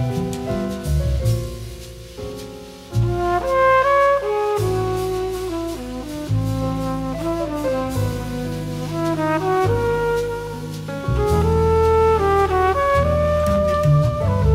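Jazz recording with brass horns playing long held melody notes over a bass line. The music dips quieter about two seconds in and comes back louder about three seconds in.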